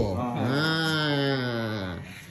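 A man's voice holding one long drawn-out note, chant-like, that sags slightly in pitch and fades out near the end.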